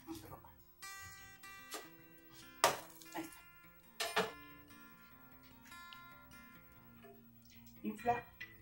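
Background music: an acoustic guitar picking single notes, with two brief sharp knocks about two and a half and four seconds in.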